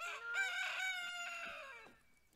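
A rooster crowing once: a single long crow, held steady and then falling in pitch as it ends.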